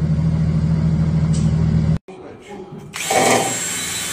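Turbocharged drift-car engine idling steadily. It cuts off abruptly about halfway through, and about a second later a hand-held power tool starts running loudly under the car.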